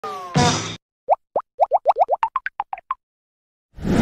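Cartoon-style sound effects for an animated intro: a short falling swoosh, then a quick run of about fourteen short rising plops that climb in pitch, and a whoosh starting near the end.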